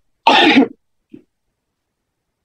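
A person clearing their throat once: a short half-second burst about a quarter of a second in, followed by a faint small sound about a second in.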